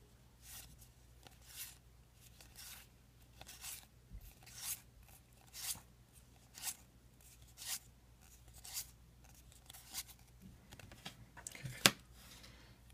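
Magic: The Gathering trading cards being flipped through one at a time, each card slid off the stack with a soft, brief papery swish, about once a second.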